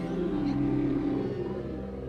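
A humpback whale call: a low call that rises and falls over about a second and a half, over steady held chords of orchestral film score.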